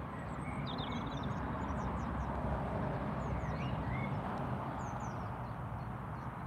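Birds chirping faintly, short high calls scattered through, over a steady outdoor rumble and hiss.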